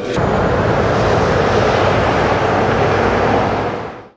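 A loud, steady rushing noise that fades out near the end.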